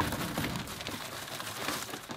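Loose coco-fibre substrate mix being poured and spread by hand in an enclosure: a steady gritty rustling hiss full of small crackles.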